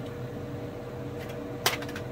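Food dehydrator running, its fan humming steadily, with one sharp click about three-quarters of the way through.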